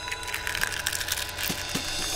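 Cartoon sound effect of an eggshell cracking, a crackling crunch with a couple of small clicks near the end, over held notes of soft backing music.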